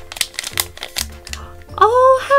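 Foil blind bag crinkling and tearing as it is ripped open by hand, in a run of short crackles, over background music with a steady beat.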